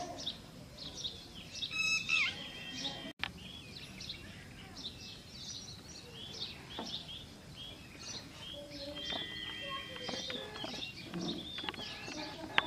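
Small birds chirping, many short high calls overlapping one another, with a momentary dropout of all sound about three seconds in.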